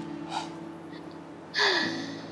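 A person's short, breathy gasp about one and a half seconds in, falling in pitch, after a fainter breath near the start.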